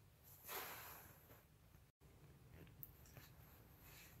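Near silence: room tone, with a faint short sound about half a second in and a tiny click near the end.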